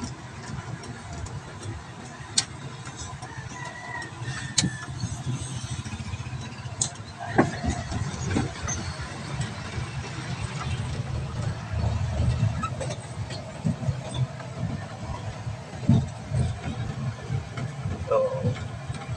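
Engine and road noise inside the cab of a small truck on the move: a steady low rumble with a few sharp rattles or knocks in the first half.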